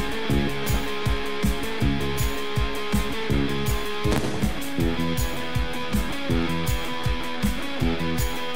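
Band music: electric guitar over a steady drum beat, with a change of chord about halfway through.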